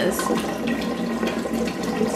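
Kitchen tap running in a steady stream, with a burnt hand held under the cool water.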